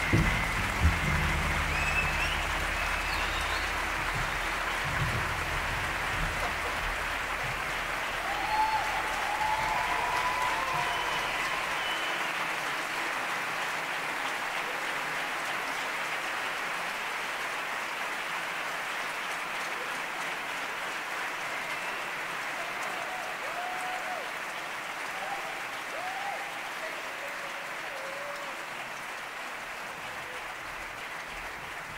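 Theatre audience applauding after a live set, a long steady applause that slowly fades away.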